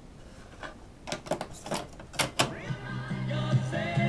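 Plastic 8-track cartridge clicking and clunking as it is pushed into a vintage Lloyds stereo's 8-track deck. About two and a half seconds in, music starts playing from the newly repaired deck and grows louder.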